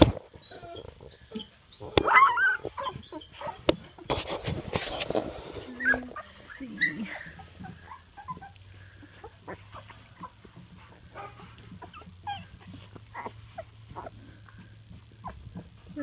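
Two-and-a-half-week-old puppies squeaking and whimpering in short bursts as they crawl and are handled, loudest in the first few seconds, with rustling from the handling. A faint low steady hum joins about halfway through.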